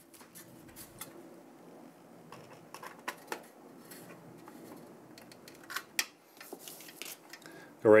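Cryorig H5 tower cooler and its fan being handled and set onto the CPU mounting bracket: scattered light clicks and taps of metal and plastic, with a sharper click about six seconds in, over a faint low hum.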